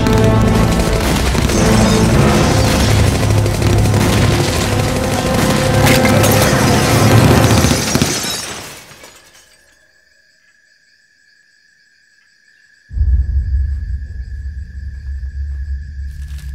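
Dramatic film score over automatic rifle fire and shattering glass, which fades out about eight seconds in and leaves a thin high steady tone. About thirteen seconds in, a deep low rumble starts suddenly.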